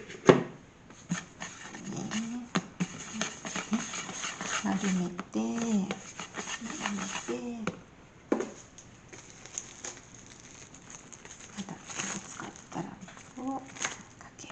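Short, rising-and-falling whine-like vocal sounds recur through the first half. Scattered taps and clicks, one sharp one just after the start, come from hands working bread dough and plastic wrap on a pastry mat.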